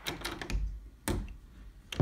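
Footsteps and the rustle and clicks of a handheld camera being carried while walking: a few sharp clicks and soft low thumps spaced about half a second apart.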